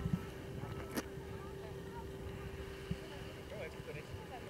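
Low rumble of outdoor wind buffeting a camcorder microphone, with faint distant voices, a steady faint hum and a sharp click about a second in.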